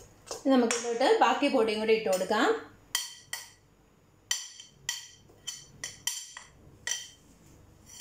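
A scattered series of light clinks and taps of a metal spoon and a white bowl against a stainless steel mixing bowl as flour is tipped and scraped into the cake batter.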